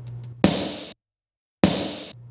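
Two snare drum hits from a mixed drum stem, each with cymbal wash ringing behind it, a little over a second apart, with a short stretch of dead silence between them.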